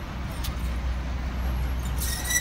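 Street traffic noise at a road crossing: a steady low rumble under a hiss of road noise, with one brief click about half a second in.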